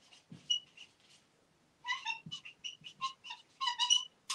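Dry-erase marker squeaking on a whiteboard in short strokes as words are written: a few squeaks at first, then a quick run of them from about two seconds in.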